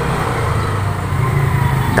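A steady low motor rumble, like an engine running nearby.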